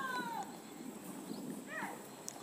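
Faint animal calls in the background: a call falling in pitch at the start, and a short, higher call near the end.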